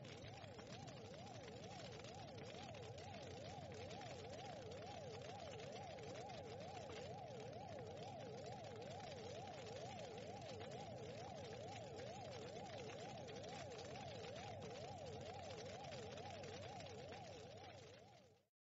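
A faint electronic tone warbling rapidly up and down in pitch over a low hiss, fading out near the end.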